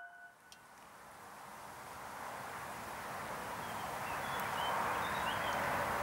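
The last piano note dies away, then a steady outdoor background hiss fades in and grows louder, with a few faint bird chirps in the middle.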